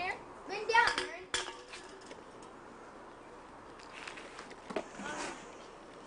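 A child's high voice calling out in short wordless bursts, with a single sharp knock about a second in and another fainter voice sound near the end.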